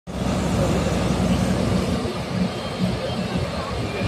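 Loud, steady low rumble of a working bucket-wheel excavator in an open-cast mine.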